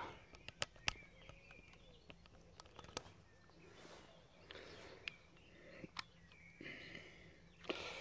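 Quiet outdoor background with a few faint, short clicks, the sharpest just under a second in and another at about six seconds: camera and air pistol handling noise, not a shot.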